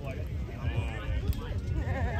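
Players' voices calling out during a volleyball rally: short, wavering, high-pitched calls, about half a second in and again near the end.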